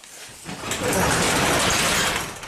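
Volvo S60 turbo engine starting: a rush of noise that builds over the first second and settles into a steady run, still misfiring with cylinder one's spark plug swapped.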